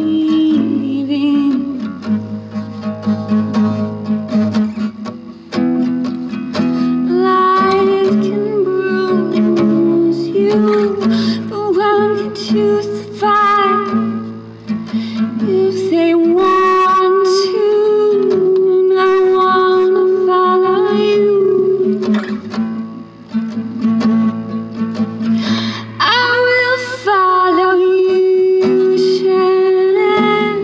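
Acoustic guitar played in a song accompaniment, with a voice singing long held, wavering notes over it.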